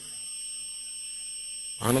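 Steady high-pitched electronic whine made of several unwavering tones, the highest the loudest, carried by the microphone and recording chain. A man's voice starts again near the end.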